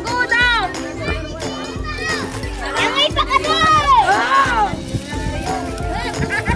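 Children shouting and calling out in high, rising-and-falling cries, loudest about midway through, over steady background music.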